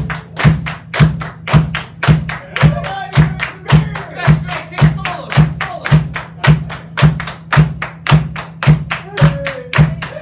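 A live drum kit playing a steady beat, the kick drum landing a little under twice a second with sharp strokes between, while people on stage clap along. A few short shouts or sung notes come through over the beat.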